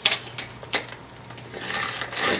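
Paper shuffled and clicked into place on a Fiskars sliding paper trimmer, then a rising swish near the end as the trimmer's blade carriage slides along to cut the card.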